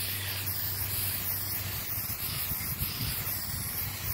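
Aerosol spray-paint can spraying onto nylon umbrella fabric, a steady, unbroken hiss.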